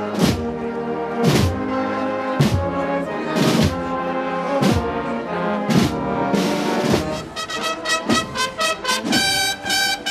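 A municipal band playing a slow processional march: sustained brass chords with a struck beat about once a second, breaking about seven seconds in into quick short repeated notes.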